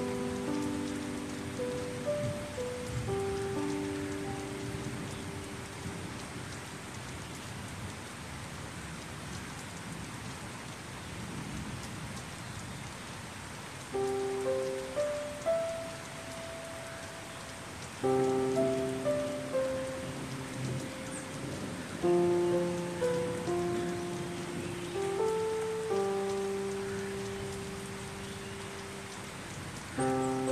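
Steady rain falling, with slow, calm piano notes layered over it. The piano drops out for several seconds in the middle, leaving only the rain, then comes back in short phrases.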